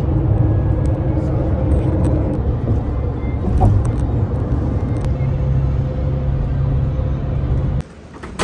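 Steady low road and engine rumble heard from inside a moving passenger van on a highway, cutting off suddenly near the end.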